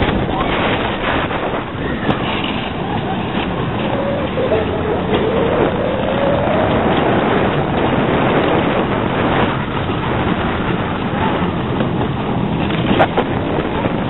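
Steady rush of wind on the microphone and the rumble of an Arrow/Vekoma suspended roller coaster train running along its track, heard from a rider's seat. A faint tone glides down and back up midway, and there are a few sharp clicks near the end.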